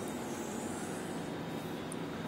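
Steady background room noise, a soft even hiss with no distinct events, in a short gap between spoken sentences.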